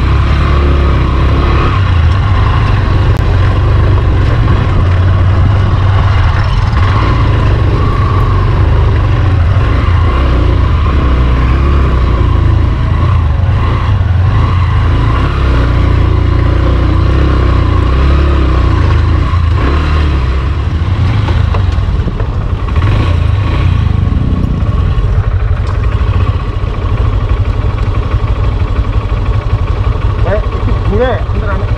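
Motorcycle engine running as the bike rides slowly over a rough dirt track, with a steady heavy rumble from wind on the bike-mounted microphone.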